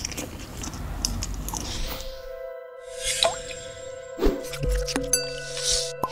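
Close-miked chewing of soft food for about two seconds, then a short logo jingle: a whoosh, two sharp hits and several held tones.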